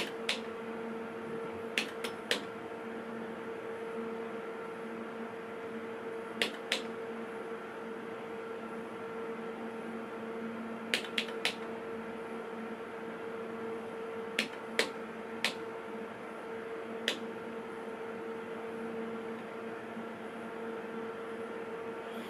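Front-panel keys of an HP 8510B network analyzer display unit clicking as they are pressed, about ten clicks, mostly in quick pairs. Under them the running instrument gives a steady hum.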